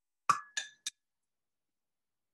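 Three quick ringing clinks within about half a second, the first the loudest: a paintbrush knocking against a hard paint container.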